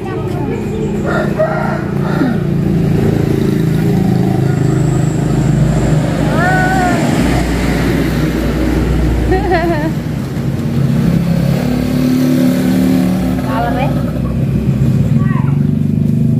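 A motor vehicle's engine running steadily, a low hum that swells and eases, with brief voices over it.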